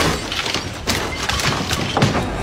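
A sudden crash-like burst of noise, then a few sharp knocks.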